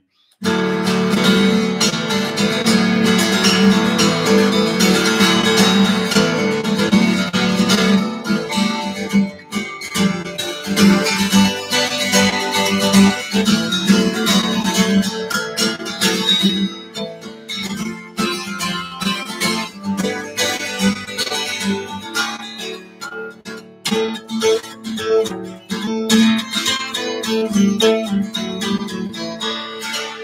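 Twelve-string acoustic guitar in drop D tuning, strummed in full ringing chords. It starts about half a second in and plays densely for the first several seconds, then breaks into sparser, more rhythmic strums.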